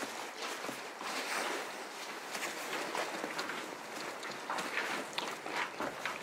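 Footsteps of people walking over rough, weedy ground, in irregular crunching steps.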